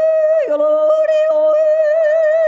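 A woman yodeling live into a microphone, holding one long high note that takes on a widening vibrato in the second half, with a fainter lower note sounding briefly beneath it.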